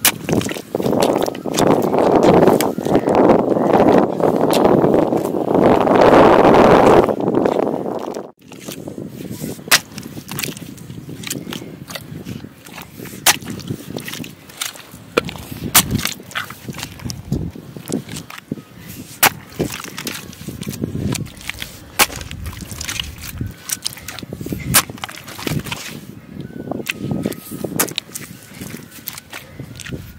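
Hoe chopping into and levering up wet mud: irregular sharp strikes and wet squelches. A loud rushing noise fills the first eight seconds or so and cuts off suddenly.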